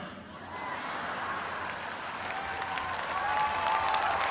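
Audience applauding, the clapping slowly growing louder.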